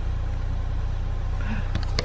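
A car engine idling, a steady low rumble heard from inside the cabin.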